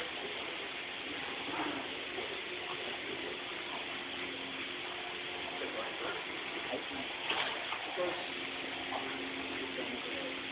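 Indistinct voices of several people talking over a steady hiss with a faint low hum.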